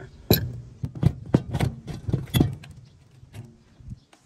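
Sharp clicks and knocks of plastic hose fittings being worked, pushed and twisted together by hand, a quick run of them in the first two and a half seconds, then quieter handling.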